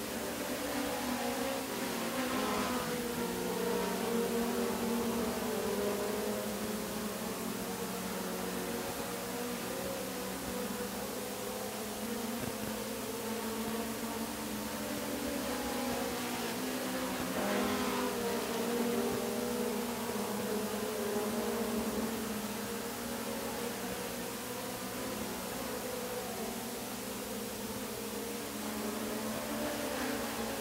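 Four-cylinder dirt-track race cars running at speed around the oval, their engines swelling as cars go past about two seconds in and again around seventeen seconds.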